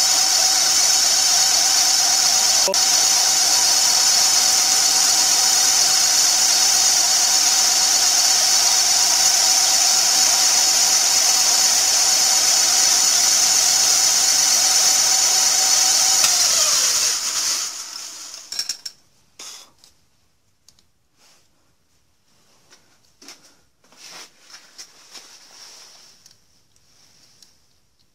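Small milling machine running with a broken centre drill in the spindle, cutting a 60-degree angled seat into a magneto cam ring: a loud steady whine. About seventeen seconds in the motor is switched off and its pitch sags as it spins down. After that only a few light clicks and knocks are heard.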